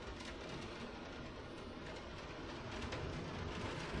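Steady rain, an even hiss with a low rumble beneath it and no distinct events.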